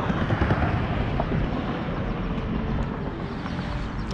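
Steady rumbling outdoor noise of road traffic mixed with wind on the microphone.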